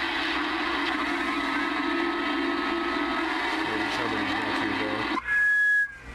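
Galaxy DX-2547 CB radio's speaker on AM receive: steady static, with faint, garbled distant voices from skip conditions under it. About five seconds in the noise cuts out and a short, steady, high beep sounds.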